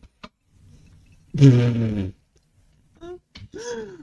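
A man's loud, drawn-out groan falling in pitch, about a second and a half in, followed by two short vocal sounds near the end. A single click comes right at the start.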